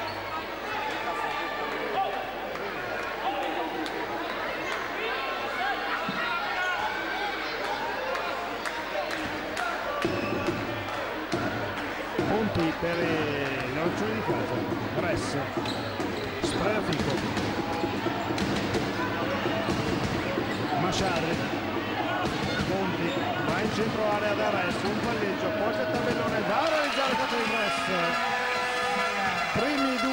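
Basketball bouncing on a hardwood court with the knocks of play, under steady crowd voices in a large hall that grow louder about halfway through. Near the end a horn-like tone sounds over the crowd.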